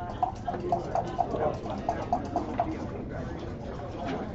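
Backgammon checkers clicking against the board and each other as a move is played: a quick run of about ten sharp clicks, roughly four a second, that stops a little past halfway.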